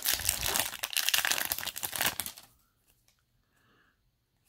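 Foil wrapper of a Yu-Gi-Oh! Wild Survivors booster pack crinkling as it is opened by hand. It stops about two and a half seconds in.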